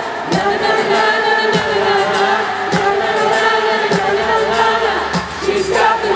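Live pop-rock band playing in an arena, with long held sung notes over a steady drum beat.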